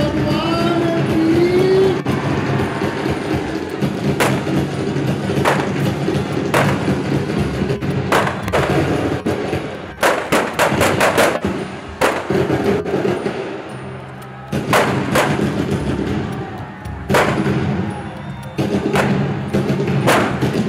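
Firecrackers going off inside a burning Dussehra effigy: irregular loud bangs every second or so, with a rapid string of bangs about halfway through, over steady music.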